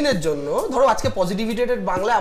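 Only speech: a man talking in Bengali in conversation.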